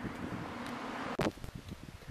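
Wind blowing on the microphone as a steady rush. A little over a second in, it is broken by a sharp click, and a quieter, uneven rustle follows.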